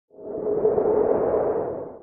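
Short synthesized whoosh with a steady mid-pitched hum, swelling in over about half a second and fading away near the end: an audio logo sting.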